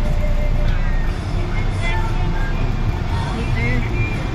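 Steady low engine and road rumble heard from inside a moving vehicle, with music and voices also present.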